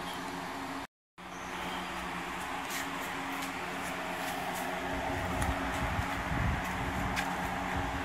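Steady hum of a shop fan or air conditioner, cut out briefly about a second in. About five to seven seconds in a low rumble joins it, a wooden table on swivel casters rolling over a concrete floor, with a few light clicks.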